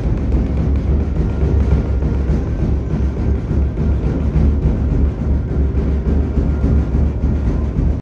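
Music with deep, steady drumming and a heavy low rumble.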